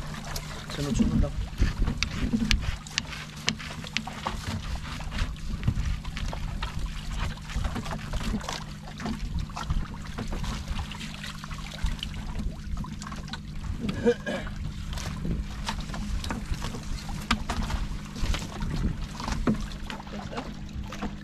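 An engine drones steadily on a fishing boat, under scattered knocks and clicks as a fishing net and line are hauled aboard by hand.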